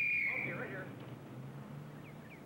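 A referee's whistle blown in one long steady blast that ends about half a second in, stopping play. Faint background sound follows.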